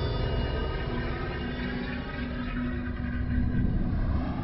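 Dark, low rumbling drone from a horror film's title-sequence soundtrack, with sustained tones held over it.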